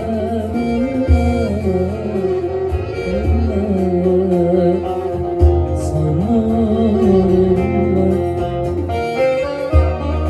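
Turkish folk music played live on a bağlama (long-necked saz), with a man singing a wavering melody over a steady low bass.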